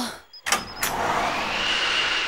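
Drama sound effect of a window sliding open with a sharp clack or two, followed by a steady rushing whoosh like wind that swells and holds.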